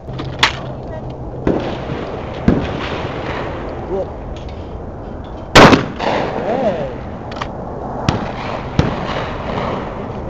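A shotgun fired once at a clay target, a single very loud blast a little past halfway through. Several fainter sharp cracks and knocks come before and after it.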